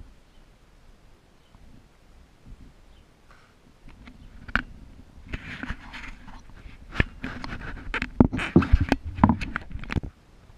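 Handling noise: a run of knocks, taps and scrapes as a copper filter drier, a hermetic compressor and their leads are moved about on a plywood board. It starts about four seconds in and is busiest near the end.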